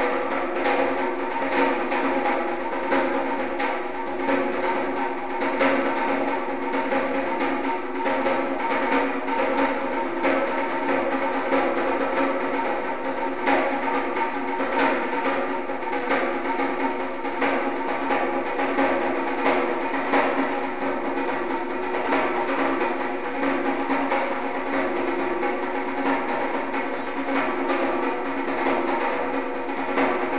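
Djembe struck with a pair of drumsticks, playing a Durga Puja beat: fast, dense, unbroken stick strokes with the drumhead ringing steadily underneath.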